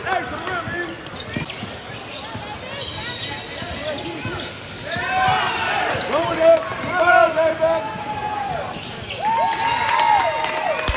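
A basketball being dribbled and bouncing on a hardwood gym floor, with short sneaker squeaks and voices from players and spectators.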